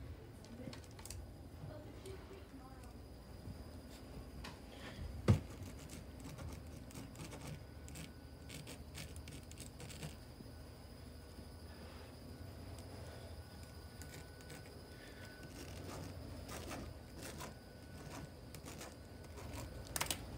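Faint handling noise: soft scattered clicks and rustling, with one sharp knock about five seconds in.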